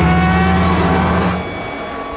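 Podracer engine sound effects: a loud, deep, steady drone with steady high tones above it, which drops away suddenly about one and a half seconds in.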